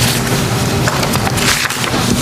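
Room tone through the chamber's microphone system: a steady low electrical hum with hiss, and a few faint brief rustles.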